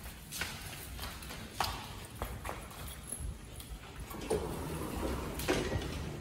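Footsteps and the clicking of two Basenjis' claws as they walk on leashes over a hard floor: irregular light taps, with a denser, louder shuffling noise from about four seconds in.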